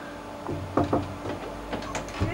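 A few light knocks and clicks over a low steady hum.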